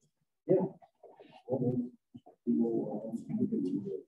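Muffled, indistinct voices from the meeting room, low-pitched and cutting in and out in short stretches, with a longer stretch near the end.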